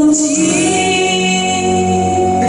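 A woman singing a long held note into a microphone over a recorded backing track, in a sentimental ballad (enka-style) song.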